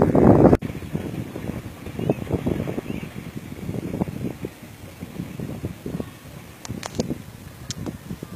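Wind buffeting the microphone as an uneven low rumble. It is loudest for the first half second, cuts off abruptly, and is followed by a few faint sharp clicks near the end.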